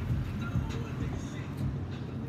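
Steady low rumble of city street traffic, with a faint, brief murmur of a voice about half a second in.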